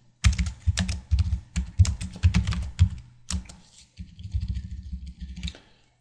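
Typing on a computer keyboard: a quick run of keystrokes with a short break about three seconds in, then softer keystrokes near the end.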